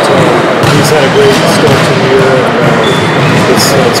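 Voices talking over a loud, steady din of room noise, with a few sharp knocks: about half a second in, a second in, and near the end.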